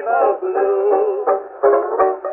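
A 1924 acoustic-era Edison Diamond Disc of a kazoo, voice and banjo trio playing blues: a buzzing, kazoo-like melody line that wavers in pitch, with banjo plucks coming in near the end. The sound is thin and boxy, with no deep bass or high treble.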